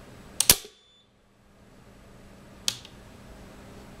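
An AP50 three-pole automatic circuit breaker tripping on its electromagnetic (instantaneous) release under a 500 A test current: a loud, sharp double snap about half a second in, then a single fainter click a couple of seconds later. The trip is instantaneous, about 11 ms, as the magnetic release should be.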